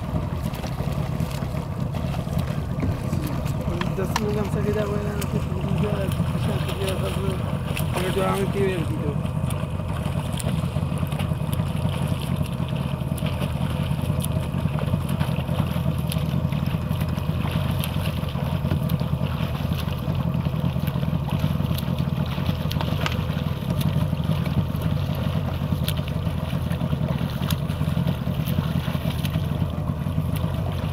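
Motorboat engine running steadily at low speed, a continuous low drone. Faint voices come through briefly, about four to nine seconds in.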